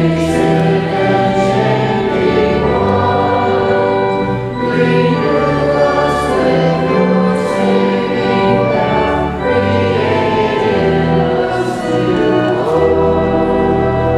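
A group of voices singing a hymn together, held on long sustained notes, with organ accompaniment.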